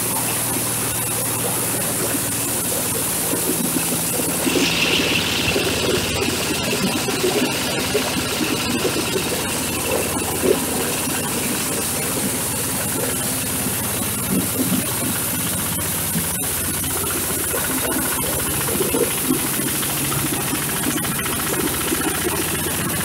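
Corn sheller for husked cobs running under load, driven by a Kubota single-cylinder diesel engine: a steady engine drone and threshing-drum rush with a constant crackle of husks and cobs going through. About four seconds in, the noise turns brighter and harsher.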